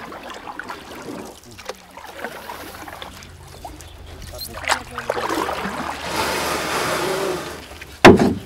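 Handling noise from live lobsters being lifted and moved in a styrofoam cooler: scattered clicks and scrapes, then a stretch of rustling noise from about five seconds in until just before the end.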